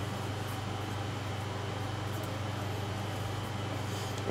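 Steady low hum with an even hiss over it: constant room noise with no distinct events.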